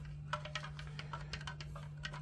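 Light, irregular clicks and ticks of a small wooden spoon against a plastic jug as salt is added to the water in it, over a faint steady low hum.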